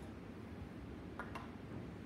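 Quiet room tone, with a faint spoken word and a couple of light clicks about a second in.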